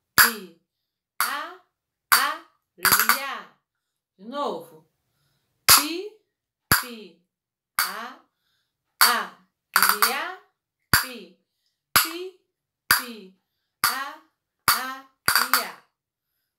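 A pair of flamenco castanets struck by hand in a slow, even pattern of the Fandango de Huelva, sharp clicks about once a second with a few quick doubled strokes. A woman's voice sounds softly with the strokes, saying the rhythm syllables.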